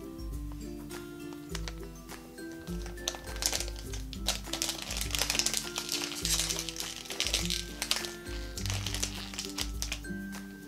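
Background music, with a plastic Lalaloopsy Tinies blind-bag packet crinkling as it is torn open and handled, busiest in the middle.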